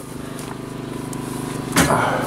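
A motor vehicle's engine running steadily and growing gradually louder, as if approaching. A brief, loud rustling thump comes near the end.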